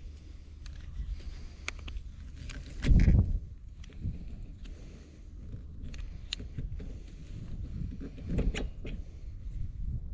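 Small plastic clicks and rattles of sprayer nozzle bodies and caps being handled and fitted, over a steady low wind rumble on the microphone. A loud low rumble swells about three seconds in, and another cluster of clicks comes near the end.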